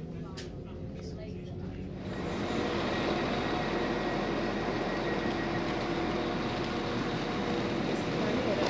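Passenger train noise: a low hum inside the carriage, then from about two seconds in a louder, steady rush with a few held tones, heard on the platform beside the train.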